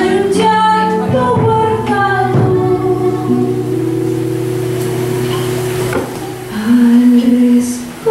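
A woman singing an Argentine Cuyo folk song to acoustic guitar accompaniment, holding several long notes through the middle and growing louder near the end.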